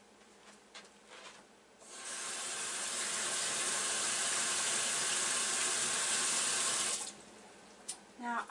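Water running from a tap for about five seconds. It starts about two seconds in and stops sharply near the end.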